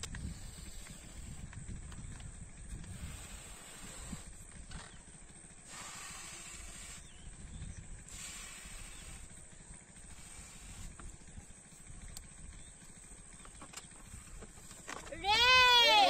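Breaths blowing up a long latex rocket balloon by mouth: soft puffs of air, a few seconds apart, over a low rumble. About a second before the end, a loud, high-pitched squeal sets in, its pitch rising and falling in arches.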